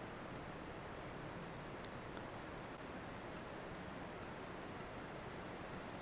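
Steady low hiss of microphone room noise, with two faint computer-mouse clicks close together a little under two seconds in.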